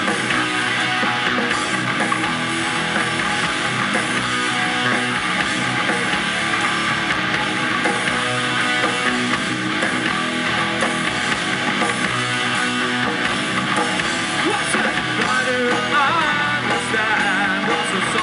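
A live metal band playing: electric guitars over bass and drum kit, steady and loud throughout.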